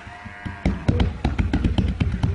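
A quick run of dull thumps and knocks, several a second, starting about half a second in.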